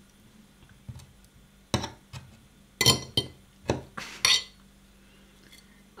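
Metal fork clinking against a plate and a glass jar of pickled jalapeños: about seven short, sharp clinks spread between about one and four and a half seconds in.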